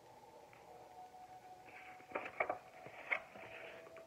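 A page of a hardcover picture book being turned: paper rustling, with a few sharp flicks and snaps about two to three seconds in.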